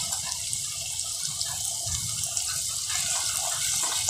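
Chopped garlic, green chillies and whole spices sizzling in hot oil in a clay handi while a wooden spatula stirs them: a steady hiss.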